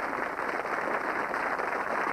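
Studio audience applauding: a steady, dense clatter of many hands clapping.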